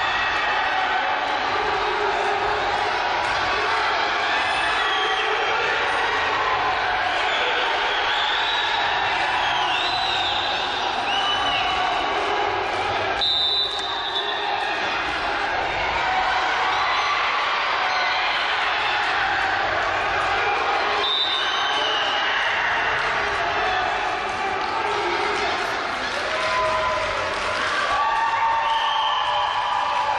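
Busy indoor arena crowd at a wrestling bout: many overlapping voices and shouts, steady throughout, with a short lull about halfway through.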